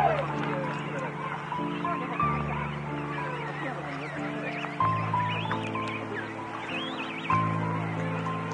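Slow relaxing music with held bass notes that change every few seconds, mixed with a king penguin colony calling: many overlapping wavering calls that rise and fall in pitch.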